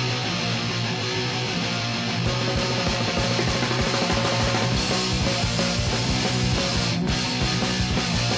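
Rock band playing: electric guitars and drums at a steady, loud level.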